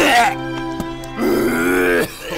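A man's grunting, groaning vocal sound, once right at the start and again from about a second in, over sustained background music.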